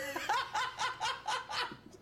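A man laughing in a quick run of short, high-pitched bursts, about four a second, tailing off near the end.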